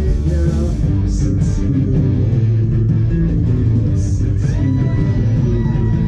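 Rock band playing live: electric guitar and bass guitar, loud and continuous, with a long held high note coming in about two-thirds of the way through.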